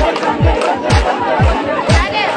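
Dance music with a deep kick drum thumping about twice a second, and a crowd shouting and cheering over it.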